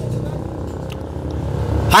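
Low, steady rumble of a motor vehicle engine in the street, a little louder toward the end.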